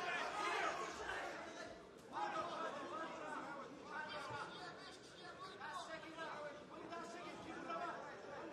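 Several voices shouting and talking over one another in a large hall, a chatter of spectators or cornermen calling out during ground fighting.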